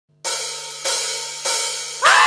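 Drum-kit cymbal count-in at the start of a rock track: three evenly spaced strikes, each ringing out and fading, over a faint steady low hum.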